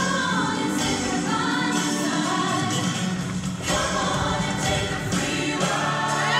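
A show choir of mixed voices singing together over steady music.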